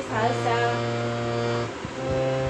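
Harmonium reeds holding a steady note, the last note of the sung phrase, which breaks off briefly near the end and then sounds again.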